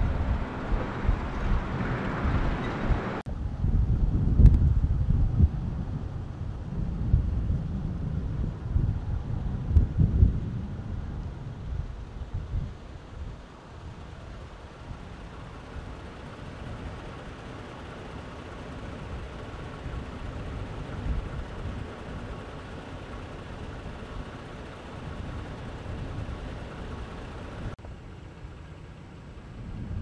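Wind rumbling on the microphone outdoors, gusty and louder in the first ten seconds, then a steadier, fainter low rumble. The sound changes abruptly about three seconds in and again near the end.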